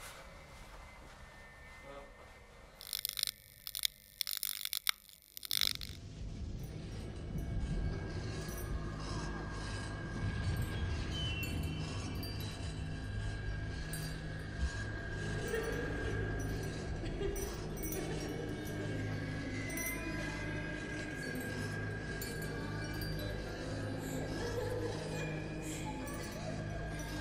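A few sharp, bright clinks between about three and five and a half seconds in, then a steady, droning horror-film score of held low tones with a thin high tone above.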